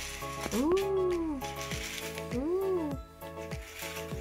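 Background music with steady held notes. Twice, a pitched tone sweeps up and falls back down, once about half a second in and again past the two-second mark.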